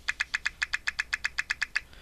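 Mac OS X volume-change pop sound, played by an iPod touch through the MobileVolumeSound tweak, repeating about ten times a second as the volume-up button is held, still sounding with the volume all the way up. It stops just before the end.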